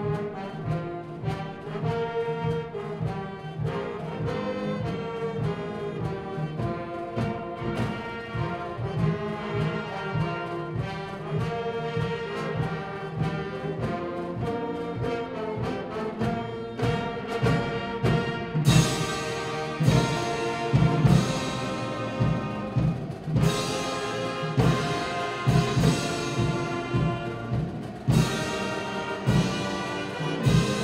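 Pep band playing a national anthem on brass with drums. About two-thirds of the way through it swells, growing fuller and louder.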